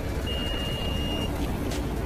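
A single high electronic beep lasting about a second, heard over a steady low rumble and hiss.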